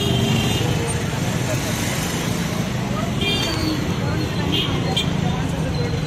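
City street traffic noise, steady throughout, with voices of people nearby mixed in.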